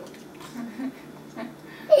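A person's soft, brief chuckle in a quiet room, with a loud voice starting right at the end.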